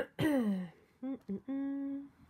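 A woman humming thoughtfully with her mouth closed: a falling 'hmm' at the start, two short hums about a second in, then one level hum held near the end.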